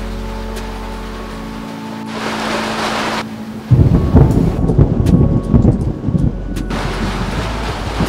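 Background music with steady low tones, then a rush of rain noise about two seconds in and, just under four seconds in, a loud crack and rumble of thunder lasting about three seconds before the rain noise returns.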